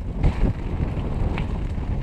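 Wind buffeting an action camera's microphone over the rumble and rattle of a mountain bike's tyres rolling fast down a rough dirt and gravel trail, with a couple of faint clicks.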